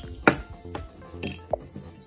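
Faint background music with a few light clicks of nail-art brushes being handled and laid down on the table, the sharpest about a quarter second in.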